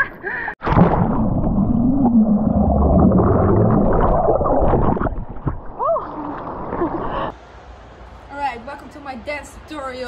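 Seawater rushing and splashing right against an action camera's microphone in breaking whitewash, loudest in the first half, with a brief vocal sound near six seconds. About seven seconds in, the water noise cuts off abruptly and a woman's voice starts near the end.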